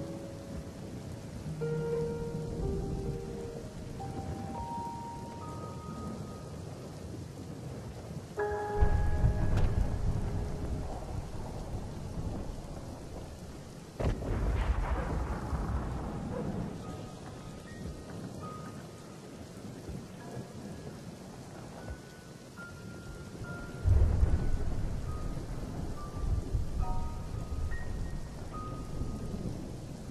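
Background soundtrack: a sparse melody of short, soft notes over a steady rain-like hiss, with three sudden deep rumbling booms spaced several seconds apart.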